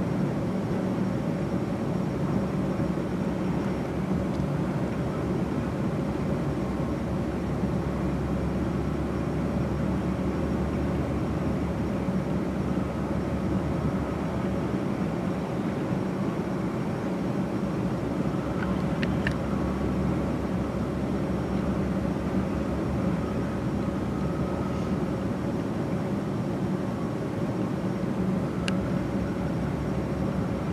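Freight train cars rolling past at low speed: a steady, even rumble of wheels on rail with a low hum, and a few faint sharp clicks in the second half.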